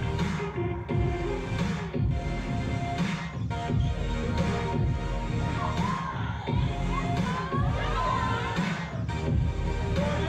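Loud electronic music with a heavy, regular beat and no vocals. In the second half, audience shouts and cheers come in over it.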